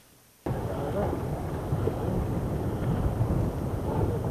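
Wind buffeting the microphone over the steady rumble of a boat running on choppy open sea, cutting in suddenly about half a second in after a brief silence.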